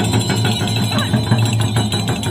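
Tibetan Buddhist ritual music: large pole-mounted frame drums beaten in quick strokes together with ringing hand bells.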